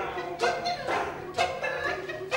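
A person's voice making short, repeated pitched calls, about two a second, some sliding in pitch.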